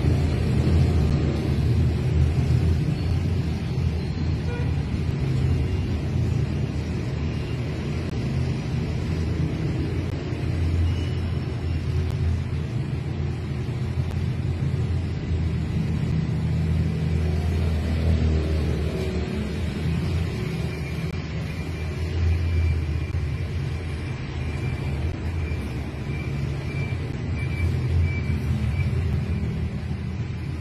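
A steady low rumble with even loudness and no distinct events.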